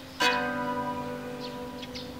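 Bandura strummed: one chord struck about a fifth of a second in, its many strings ringing on and slowly fading.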